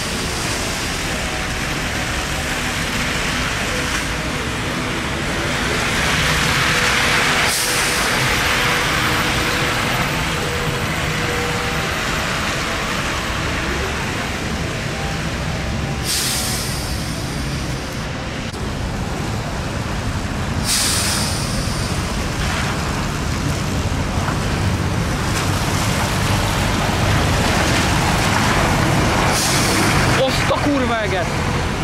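City buses running at a terminus on a wet road: a steady engine rumble and tyre hiss on wet pavement, broken about four times by short hisses of air brakes releasing. The traffic grows louder near the end as a bus passes close.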